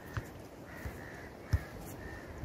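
A bird calling: a thin, drawn-out call held for most of a second in the middle, with shorter calls at the start and end. A few low, soft thumps are heard under it.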